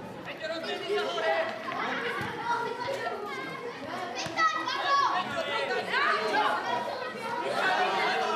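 Many overlapping voices of spectators and young players chattering and calling out, with several high children's shouts rising and falling about four to six seconds in.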